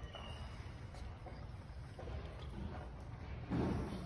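Quiet gym room tone with a faint low hum and a few small ticks, then a brief voice sound near the end.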